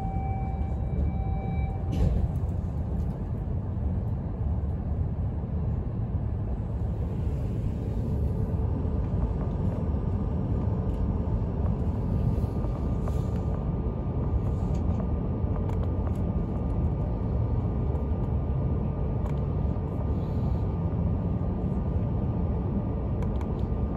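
Cabin noise inside an E5 series Shinkansen car running on the line: a steady low rumble from the wheels and track. A thin steady tone in the first two seconds ends with a click, and a faint high whine comes in about ten seconds in.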